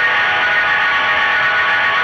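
Recorded rock music: a loud, sustained wash of distorted electric guitars holding steady tones, with no drumbeat.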